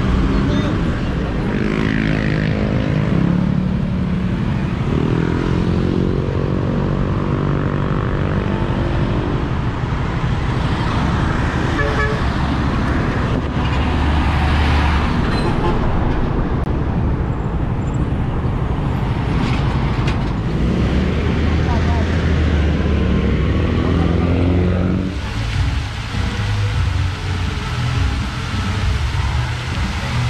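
Busy city street traffic: cars and a heavy truck passing close, their engines rumbling louder as they go by, with car horns tooting.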